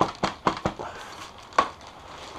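Crinkling and crackling of a foil-faced bubble-insulation wing bag as a model-airplane wing is pushed down into it. A few sharp crackles come in the first second and one more about one and a half seconds in.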